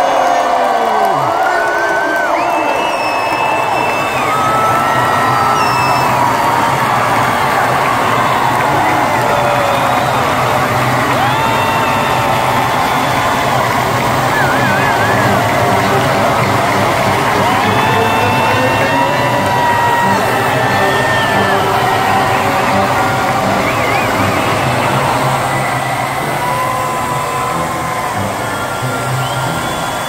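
A large crowd in an arena cheering and shouting without letup, with many long, high-pitched shouts and shrieks rising over the steady roar.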